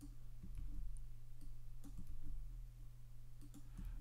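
Scattered faint clicks of a computer mouse and keyboard as keyframes are pasted and the timeline is scrubbed, over a steady low hum.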